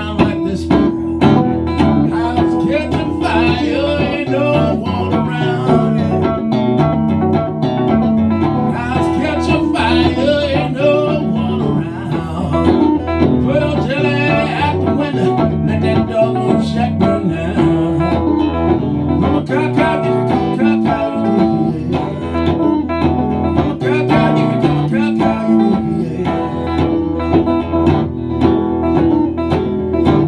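Live solo country-blues guitar, picked with a steady bass line, playing an instrumental passage with a wavering melody line above it.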